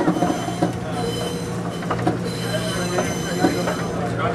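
Budd RDC railcar's steel wheels squealing against the rail on a curve, a high steady whine that grows strong about two seconds in, heard inside the car. Under it runs the steady drone of the railcar's diesel engines, with occasional clicks from the track.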